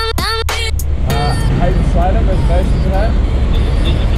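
Hip-hop background music cuts off under a second in. It gives way to street sound: a steady rumble of road traffic with brief voices.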